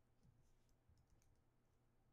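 Near silence: faint room tone with a low hum and a scatter of small, faint clicks.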